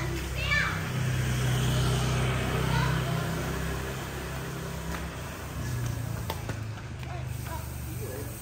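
Children's voices calling and chattering as they play in the street, over a steady low rumble.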